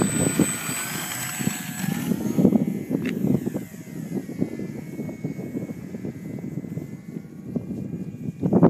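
Electric motor and propeller of a small radio-controlled Extra 260 model plane whining at takeoff. The whine steps up in pitch over the first two seconds as the throttle opens, then falls slowly and fades as the plane climbs away. Gusty wind rumbles on the microphone throughout.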